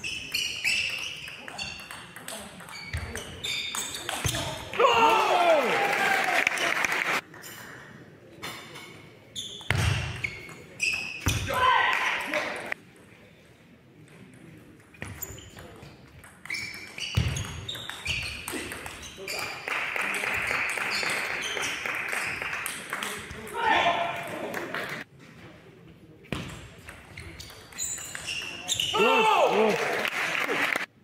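Table tennis rallies in a reverberant sports hall: the plastic ball clicks back and forth off the bats and table in runs of a few seconds. Loud shouts break in after several points.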